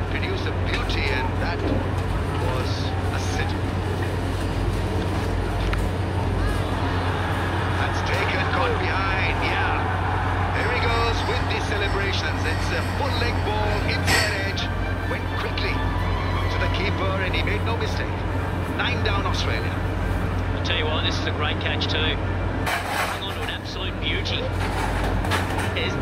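Cricket stadium crowd noise, a steady hubbub with voices through it, and one sharp knock about halfway through.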